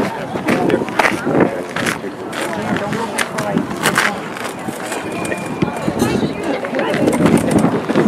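Indistinct voices talking, with scattered short knocks and clicks.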